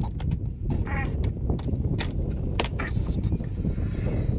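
Irregular metallic clicks and clinks of hands and tools working at a snowmobile's chaincase and sprocket, over a steady low rumble.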